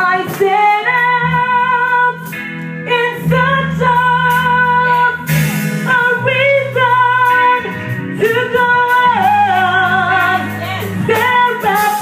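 A woman singing into a microphone over instrumental accompaniment, holding long notes.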